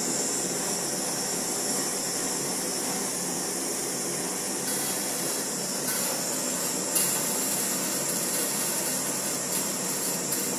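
Gas-cartridge blowtorch burning with a steady hiss as its flame heats a copper pipe joint for soldering. The hiss grows a little brighter about five seconds in and again near seven seconds, where there is one short click.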